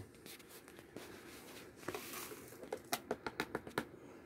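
Pay dirt tipped into a plastic gold pan: faint scattered clicks and a soft hiss of sliding grit, then a quick run of about ten sharp clicks a little before the end.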